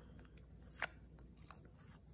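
Faint handling of trading cards as they are flipped and slid over one another, with one sharp click a little under a second in and a few fainter ticks after it.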